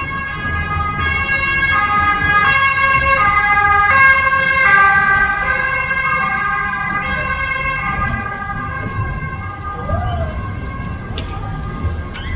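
Ambulance two-tone siren alternating between a high and a low note about every three-quarters of a second, growing louder to a peak about four to five seconds in, then fading away. Low rumble of street traffic underneath.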